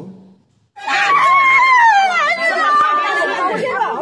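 A woman crying out in a loud, high-pitched wail that slowly falls in pitch, starting about a second in, with other people talking around her.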